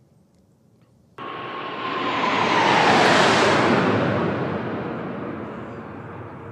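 A formation of four military jets passing low overhead. The roar begins abruptly about a second in, swells to a peak, and carries a whine that falls in pitch as the jets go by, then fades away.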